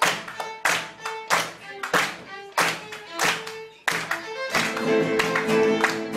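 Steady handclaps keeping time, about three every two seconds, over a solo violin melody in Argentine folk style. About four and a half seconds in, the guitars come in and the full band plays.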